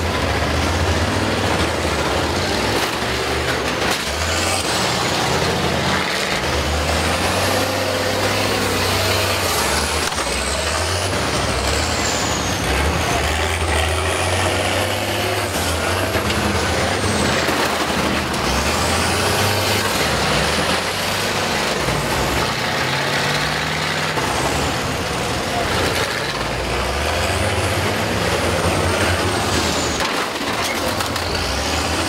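Several school bus engines revving and running hard in a demolition derby, their pitch rising and falling, with occasional crunching metal impacts as the buses ram one another.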